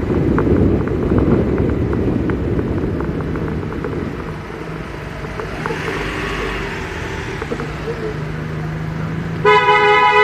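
Low road rumble of a car driving in city traffic, with a vehicle passing close by about six seconds in. Near the end a car horn sounds loudly, one steady note held for about a second.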